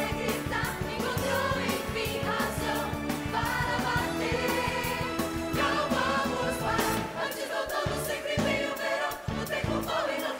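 Musical theatre cast singing in chorus over an upbeat band accompaniment with a driving beat; the low bass thins out briefly near the end.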